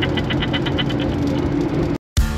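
A woman laughing in a quick, even ha-ha-ha that stops about a second in, over the steady drone of a Chevy Nova's engine heard from inside the cabin while driving.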